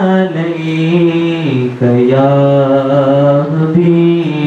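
A man singing an unaccompanied Urdu devotional song (naat khwani style) into a microphone, holding long, slightly wavering notes, with a brief break for breath about two seconds in.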